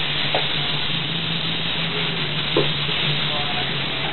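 Western diamondback rattlesnake rattling steadily in a dry, sizzling buzz as it is handled on a hook. Two light knocks sound about half a second in and near two and a half seconds, typical of the metal hook touching the floor.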